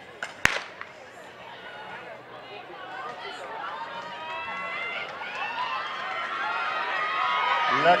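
A starter's gun fires once about half a second in, starting a sprint race. Spectators then shout and cheer, growing steadily louder as the runners come down the track.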